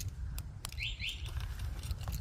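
A bird chirping briefly about a second in, a quick run of short notes, over a low steady rumble, with a couple of faint clicks just before.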